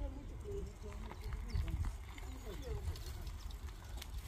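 Faint distant voices over a steady low rumble, with scattered light clicks.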